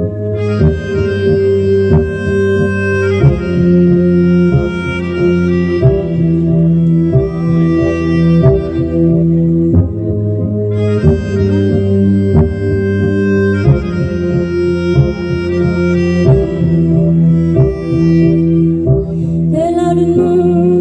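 Melodica playing a sustained, reedy melody in phrases of a few seconds over an electronic backing track with a steady beat and bass. A singing voice comes in near the end.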